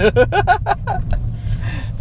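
Men laughing in quick repeated pulses for about a second, trailing off into a breath, over the steady low road rumble inside a moving Toyota Corolla Hybrid.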